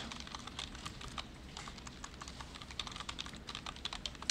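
Quiet computer keyboard typing: a steady run of light, irregular key clicks as a line of text is typed.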